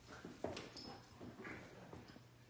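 Puppies at play, giving brief high whimpers, with a sharp knock about half a second in.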